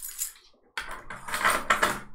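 Poker-chip clinking sound effect from an online poker client during an all-in: a short clatter near the start, then a denser run of chip clicks through the second half.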